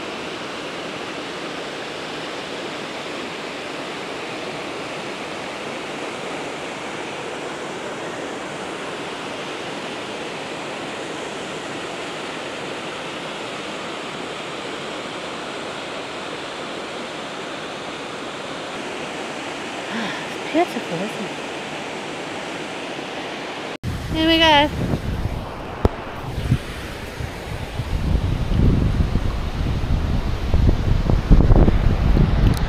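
Steady rush of a waterfall falling into a gorge pool. About three-quarters of the way through, the sound cuts to louder, uneven sloshing and lapping of water right at the microphone.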